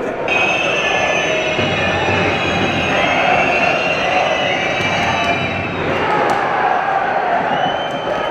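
Football stadium crowd noise: a dense mass of fan voices with shrill, wavering whistling held for several seconds, as the crowd reacts around a penalty kick.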